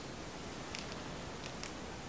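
Faint steady room hiss, with a few faint short ticks about a second in.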